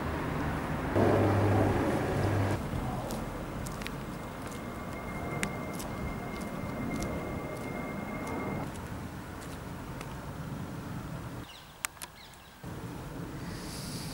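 Outdoor street ambience with road traffic noise, a louder stretch about a second in as if a vehicle passes, and a thin steady tone for a few seconds in the middle.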